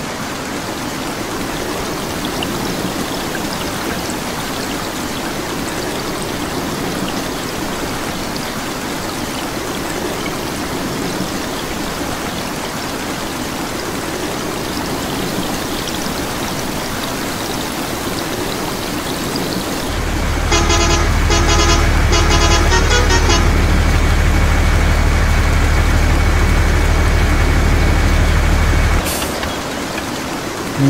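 Steady rain falling. About two-thirds in, a truck engine sound starts with a low steady drone, and a horn honks several times in quick succession over it. The engine cuts off suddenly near the end.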